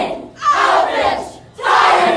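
Speech choir shouting in unison: loud group shouts in a steady rhythm, about one a second.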